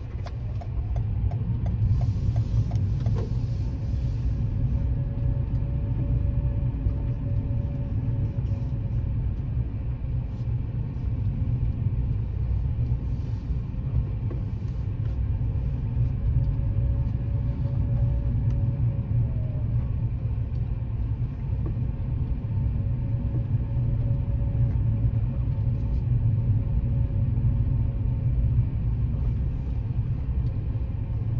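A car's engine and tyre rumble heard from inside the cabin while driving at low speed, steady throughout, with a faint steady whine above it.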